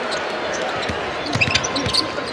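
A basketball being dribbled on a hardwood court, with a few sharp bounces and clicks about a second in, over the steady noise of an arena crowd.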